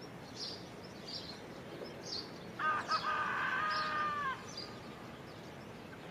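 Birds chirping outdoors in short, high notes repeated about every half second. About two and a half seconds in, a louder drawn-out call of about a second and a half: two short notes, then a long held note that drops at its end.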